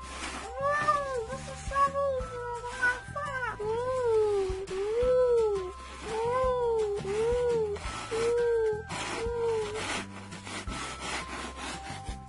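A string of about ten short wordless cries, each rising and falling in pitch, like meows or whimpers, over soft background music. Light scraping comes from hands and plastic toy scoops digging in sand.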